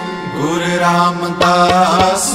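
Sikh shabad kirtan: a singing voice glides up into a long, ornamented held note over a steady harmonium drone, with a few tabla strokes.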